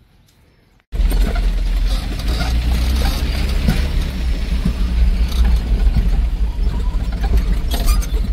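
Cabin noise of a vehicle driving over a rough dirt track: a steady low rumble with rattles and small knocks from the body as it bumps along, starting suddenly about a second in.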